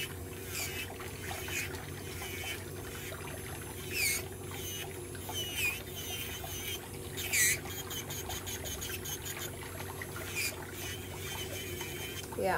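Electric nail drill (e-file) running steadily with a white cone-shaped bit, sanding down a thickened, fungal ram's horn big toenail. Several short high squeaks come through as the bit works the nail, the loudest about seven seconds in.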